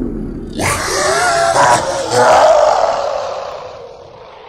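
A man's voice shouting in a few bending, drawn-out yells, then trailing off into a long echoing tail that fades away.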